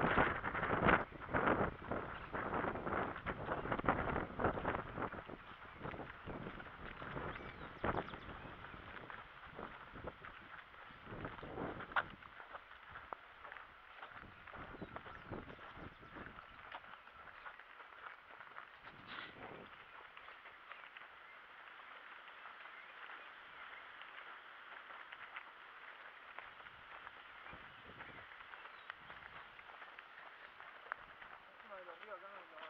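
Footsteps on a dirt track, with wind buffeting the microphone loudly for the first five seconds or so; after that the steps are fainter and sparser.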